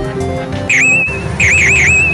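Electronic sound effects from a Hana Hana Houou-30 pachislot machine: low steady electronic tones, then a whistle-like swooping chirp less than a second in, followed by three quick swoops that trail off into a wavering tone near the end.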